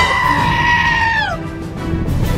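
A cartoon monster's scream of shock: one high-pitched cry, held level for about a second and then sliding down in pitch as it trails off, over background music.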